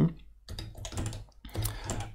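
Typing on a computer keyboard: a few irregular keystrokes, bunched most tightly near the end.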